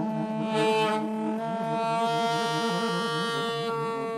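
Two saxophones, a soprano and a larger curved saxophone, playing together. One holds a long, steady high note while the other plays a fast, wavering figure low beneath it.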